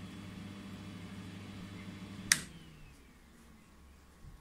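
A K40 laser cutter running with a steady electrical hum, then one sharp switch click about two seconds in as the machine is powered off. After the click the hum dies away and a faint falling whine trails off as its fans spin down.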